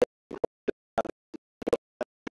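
A rapid, irregular run of short, sharp clicks, about four a second, with dead silence between them.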